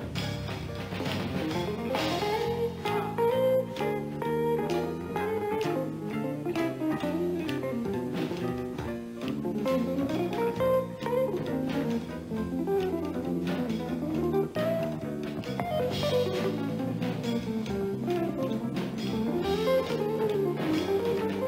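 Live jazz playing: an electric guitar runs fast single-note lines that climb and fall, over low sustained notes and a drum kit keeping time on cymbals and drums.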